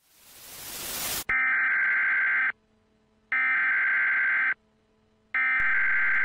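A hiss of static swells up for about a second and cuts off, then an emergency-broadcast-style alert tone sounds three times: steady electronic beeps about a second long, with short silent gaps between them.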